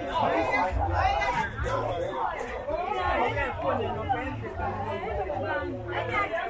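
Market crowd chatter: many voices talking at once, close and overlapping, with no single clear speaker.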